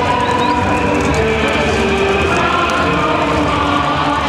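Loud music with held notes changing pitch every second or so, over a steady, dense noisy background.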